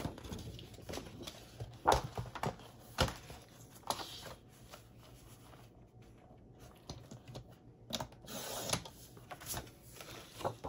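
Paper being handled and slid into place on a Fiskars paper trimmer on a cutting mat: scattered taps and clicks, with a brief rustle about eight seconds in.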